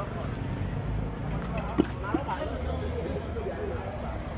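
Busy street ambience: background voices of people talking over a low traffic rumble, with two sharp knocks about two seconds in.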